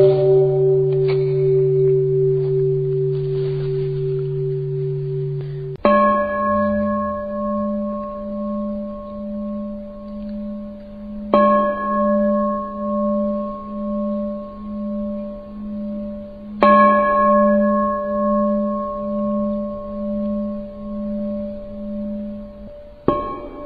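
A Buddhist bowl bell struck three times, about five and a half seconds apart, each stroke ringing on with a slow pulsing waver. A lower ringing tone left over at the start stops abruptly at the first stroke.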